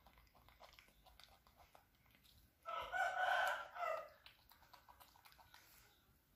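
A rooster crowing once, about three seconds in, over faint clicks and crunches of a baby monkey nibbling cauliflower.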